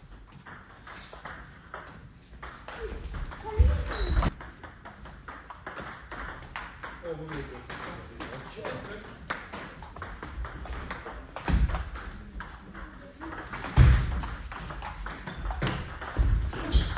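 Table tennis ball clicking sharply off the bats and the table during play, with a few heavier thumps.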